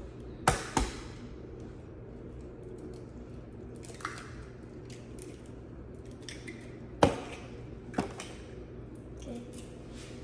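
Eggs being tapped and cracked against a plastic mixing bowl: two sharp clicks near the start and two more about seven and eight seconds in, over a steady low room hum.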